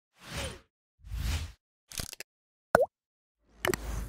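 Sound effects for an animated logo: two soft whooshes, a quick cluster of clicks, a short pop that dips and rises in pitch, then a last whoosh with sharp clicks near the end.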